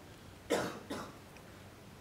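A person coughs briefly about half a second in, with a smaller second cough just after.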